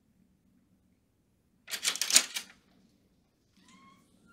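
A short scratchy burst of a dry-erase marker writing on a whiteboard, about a second and a half in, lasting under a second. Near the end there is a faint, brief rising squeak.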